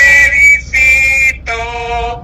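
A man and a woman singing together in three held notes with short breaks between them.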